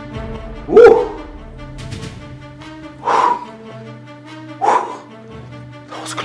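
A dog barking three times, about a second in, near three seconds and near five seconds, over sustained background music.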